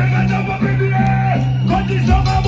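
Soca music played loud over stage speakers: a low bass note held under a short repeating melodic figure.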